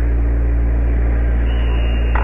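Loud steady low electrical hum over an even rushing noise, heard through an old TV set's speaker on a reel-to-reel tape recording of a 1967 television broadcast. A thin high steady tone joins near the end.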